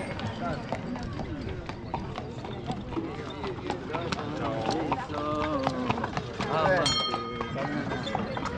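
Horse's hooves clip-clopping on stone paving as a horse-drawn carriage passes, with people talking around it. A short high-pitched call cuts through briefly about seven seconds in.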